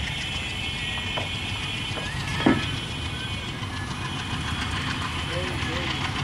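Diesel-hauled passenger train receding down the track, a steady low rumble. There is one sharp knock about two and a half seconds in.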